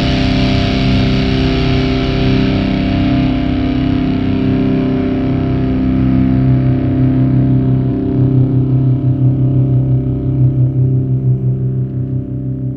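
Alternative metal: distorted electric guitar notes held and ringing out. The high end slowly dies away while the low notes sustain, taking on a pulsing wobble in the second half.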